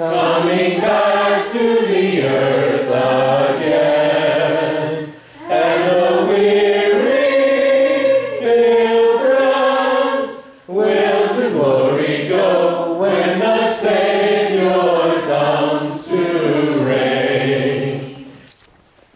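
A choir singing in slow, sustained phrases, with short pauses between lines about every five seconds.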